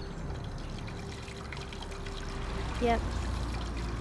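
Waste water from an illegally plumbed sink and washing machine pouring and trickling steadily out of a drain pipe onto the ground: the sink discharges straight outside instead of into a sewer. A low rumble joins about halfway through.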